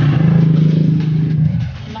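A steady low engine drone, loud at first, that fades away about a second and a half in.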